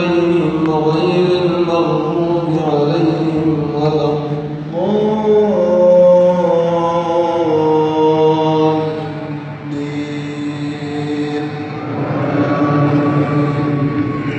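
An imam's voice reciting the Quran aloud in a slow, melodic chant, drawing syllables out into long held notes that glide between pitches, as he leads a congregational prayer.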